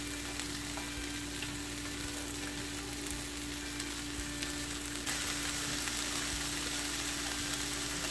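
Scrambled eggs and riced cauliflower sizzling in a hot skillet, a steady hiss that grows a little louder about five seconds in.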